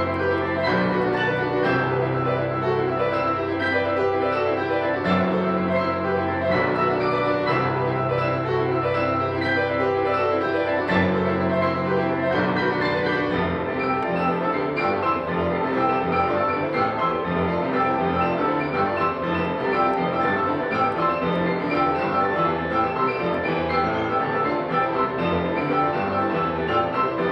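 Several Yamaha grand pianos playing together in an ensemble piece of fast, repeated note figures over held bass notes. About 13 seconds in, the bass turns into a quicker, pulsing pattern.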